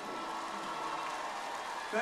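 Audience applause on a live concert recording between songs, played back over KEF Blade loudspeakers in the demo room: a steady, even clapping noise.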